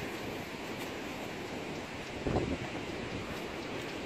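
Steady wind noise on the microphone, with a brief faint sound a little past two seconds in.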